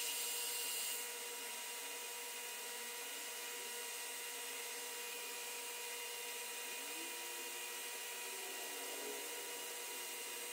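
Metal lathe running while its cutting tool turns down a small metal part, a steady machine hum with a high hiss that eases slightly about a second in.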